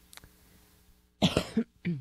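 A woman coughs twice, a longer cough a little over a second in and a short one just before the end.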